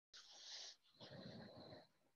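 Near silence, with two brief faint breathy hisses, the second with a faint low murmur under it.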